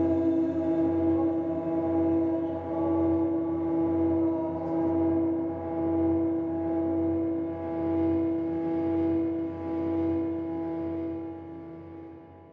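Ambient background music: a sustained drone of several steady held tones that swells and ebbs gently, fading out near the end.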